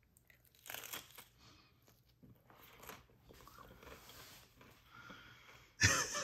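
A bite into a crisp baked cinnamon-sugar tortilla chip topped with apple, crunching loudest about a second in, then quieter crunching as it is chewed.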